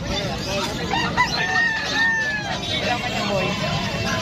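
Many caged birds chirping and calling together. About one and a half seconds in, one long drawn-out call lasts about a second.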